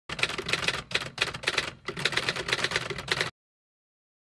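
Typewriter sound effect: rapid keystrokes in three quick runs, stopping abruptly a little over three seconds in.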